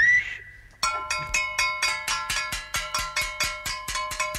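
A bell struck rapidly and evenly, about six strikes a second, each strike ringing on with several steady tones, starting about a second in and stopping near the end. It is preceded by a brief rising whistle-like tone.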